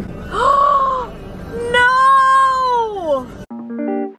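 A woman's voice making two long, high, sing-song vocalisations, the second longer and falling in pitch at its end. About three and a half seconds in, a plucked-guitar music track cuts in.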